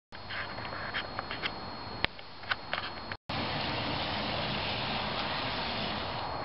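N-scale model train running around its track, a steady whirr of the locomotive and wheels on the rails. The first three seconds carry a few sharp clicks, then the sound breaks off for an instant and resumes as an even running noise.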